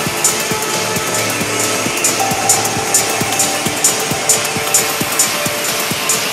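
Techno track playing in a DJ mix: a steady four-on-the-floor kick drum a little over twice a second, hi-hats between the kicks and held synth tones, with a higher synth note coming in about two seconds in.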